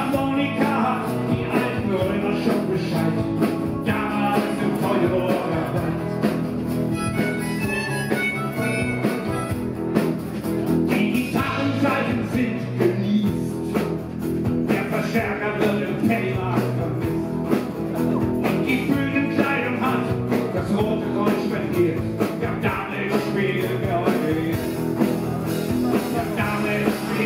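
Live band playing a folk-rock song on acoustic guitar, electric bass and drums.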